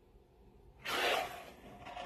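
A plastic cup full of acrylic paint dragged across a stretched canvas: a short rubbing hiss about a second in.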